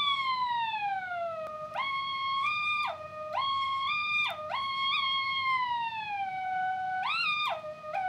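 A single test tone played off a cassette tape by a portable cassette player with a speed-control mod, its pitch bent by the tape speed. It first glides steadily downward for under two seconds. It then jumps back and forth between higher and lower notes about half a dozen times with short slides, as the preset speed buttons are pressed and released, giving a warbly, synth-like line.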